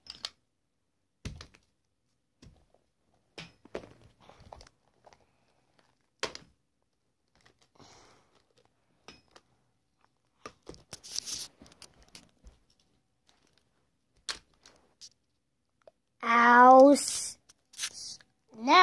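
Plastic toy monster figures being handled and moved over carpet: faint scattered clicks and rustles, with a brief louder rustle about eleven seconds in. Near the end a child's voice makes a drawn-out pitched vocal sound.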